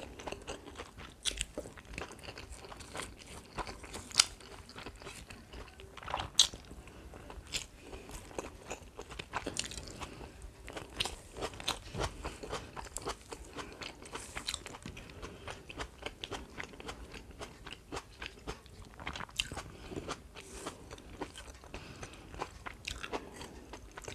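Close-miked eating: chewing with many sharp crunches of crisp fried food, the two loudest crunches about four and six seconds in.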